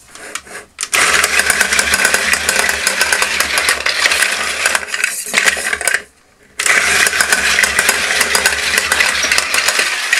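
Small battery-powered electric motor and plastic gearing of a vintage Masters of the Universe Attak Trak toy running steadily, working again after its contacts and motor brushes were cleaned. It cuts out briefly about six seconds in, then runs again.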